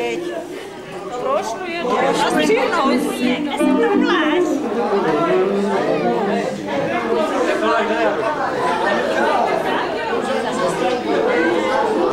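Many people talking at once in a hall, over live band music from saxophone and keyboard.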